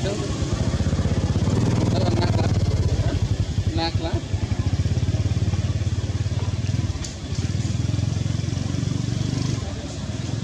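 A small engine runs steadily close by, a low pulsing drone that dips briefly about seven seconds in. A short high call sounds about four seconds in.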